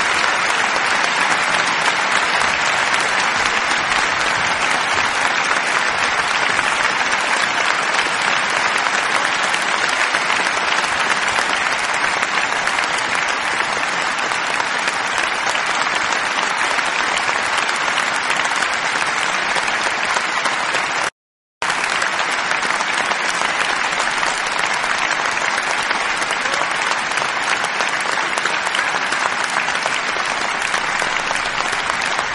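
Sustained applause from many people clapping, dense and steady. It cuts out completely for about half a second about two-thirds of the way through, then resumes.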